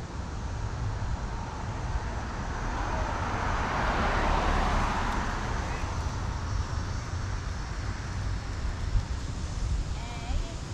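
Street traffic: a passing car's road noise swells to a peak about four seconds in and fades away, over a steady low rumble.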